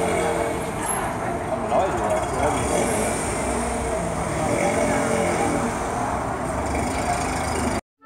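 Elio three-wheeled car running as it drives slowly past, with voices around it. The sound cuts off just before the end.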